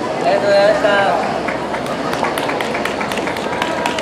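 A voice speaking against busy outdoor background noise, followed by a scatter of short sharp clicks from about a second and a half in.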